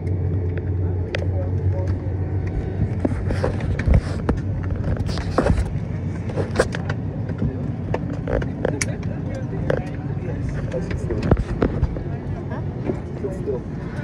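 Passengers moving about in an airliner cabin: scattered clicks, knocks and rustles of belts, bags and seats, with voices in the background. A steady low hum runs under it and weakens after about two seconds.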